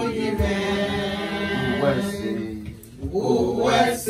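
A group of voices singing a praise chant together, holding long notes. The singing drops away briefly a little before three seconds in, then picks up again.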